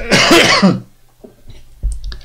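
A man coughs once into his fist, clearing his throat: a single harsh burst of under a second.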